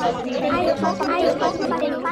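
Several children's voices talking over one another at once, a jumble of overlapping speech with no single voice standing out.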